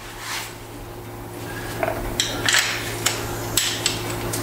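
Air hose quick-connect fitting being handled and coupled to an air tool: a few sharp clicks and short hisses of air over a steady low shop hum.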